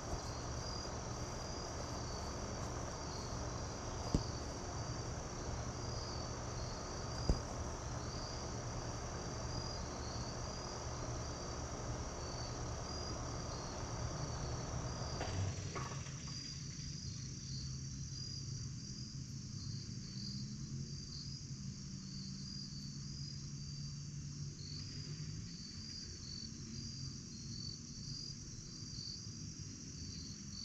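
Evening insect chorus of crickets chirping in a steady, pulsing high trill, over a low steady hum. Two short sharp knocks stand out a few seconds in.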